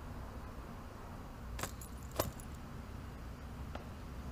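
Handbag's metal strap fittings jingling as the bag is picked up: two short metallic clinks about half a second apart, over a low steady hum.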